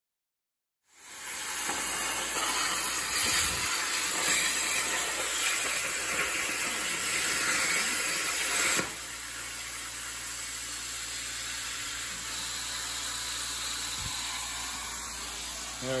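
Chicago Electric 40-amp plasma cutter on a CNC plasma table cutting steel plate: a loud steady hiss starts about a second in. About nine seconds in it drops to a quieter steady hiss.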